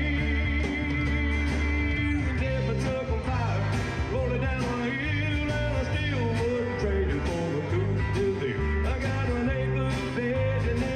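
Live band playing a country-rock song: guitars over a drum kit and bass, with a lead melody line bending in pitch.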